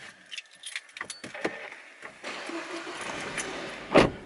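Car keys jangling, then the car's starter cranking for about two seconds. The engine catches with a loud burst near the end.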